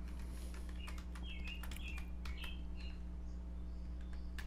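Keystrokes on a computer keyboard: a scattering of separate key taps over a steady low hum, with a few short high chirps about one to three seconds in.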